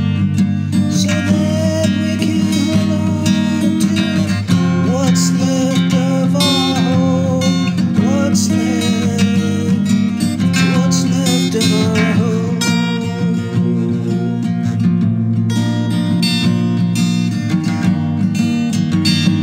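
Acoustic guitar strummed steadily in a wordless stretch of a song, with a wavering melody line over the chords from about four seconds in until about twelve seconds.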